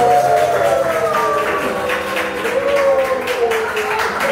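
Ballroom dance music played for a couple's demonstration: a melody that slides downward in pitch over a steady, evenly spaced beat.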